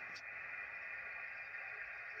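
Faint, steady receiver hiss from a QRP HF transceiver's speaker, band noise cut off sharply above the treble like a sideband filter, with one faint tick near the start.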